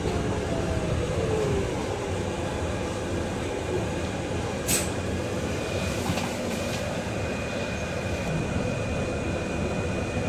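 Cabin noise inside a Volvo BZL electric double-decker bus on the move: a steady low rumble, with the electric drive's whine falling in pitch about a second in. A sharp click comes near the middle, and a faint steady high tone runs on after it.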